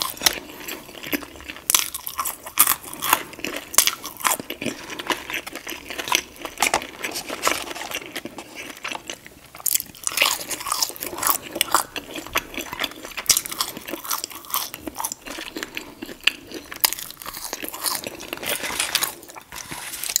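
Close-miked chewing and crunching of a fried chicken and fries meal: a dense run of sharp, crackly bites and wet mouth sounds, easing off shortly before the end.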